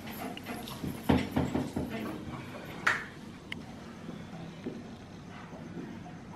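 A whiteboard being wiped with a cloth: a quick run of sharp knocks and rubbing in the first two seconds, a short squeak about three seconds in, then a click and quieter handling.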